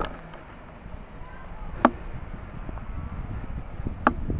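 Two sharp knocks, one at the very start and one a little under two seconds in, over a low rumble that builds through the second half.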